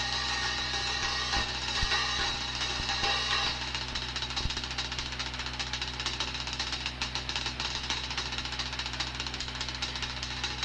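Jazz drum kit played fast: a wash of cymbals with a few bass-drum hits, going about three and a half seconds in into a rapid, even roll.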